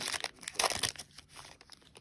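Foil trading-card pack wrapper being torn open and crinkled by hand, a dense crackling rip loudest in the first second, then dying down to a few scattered crinkles.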